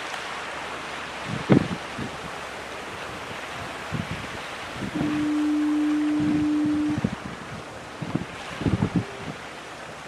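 A single steady one-note horn blast, about two seconds long, sounding in harbour fog. Gusts of wind buffet the microphone throughout.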